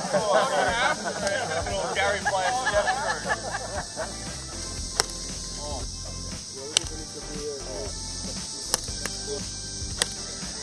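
Three sharp cracks of golf clubs striking balls, about two seconds apart, after a few seconds of people chattering and laughing.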